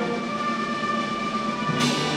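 High school concert band of saxophones, brass and woodwinds holding a sustained chord, with a percussion crash near the end.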